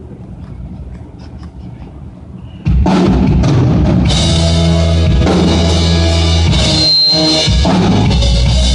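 Live band with drum kit starts playing suddenly about three seconds in, loud and full, after a quieter stretch.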